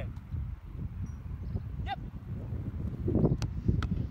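Wind rumbling on the microphone outdoors, with a short bird call about halfway through. Near the end come two sharp thuds less than half a second apart: a football struck, then caught by a diving goalkeeper's gloves.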